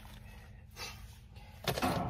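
A shovel digging into soil and mulch: a faint scrape about a second in, then a louder crunching scrape near the end as the blade is worked and lifted out of the planting hole.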